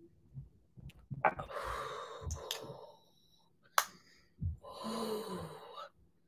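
A woman smelling perfume on a paper blotter card: two long, breathy inhalations, starting about a second in and again about four and a half seconds in, the second turning into a low hummed sigh. A few sharp clicks fall between them.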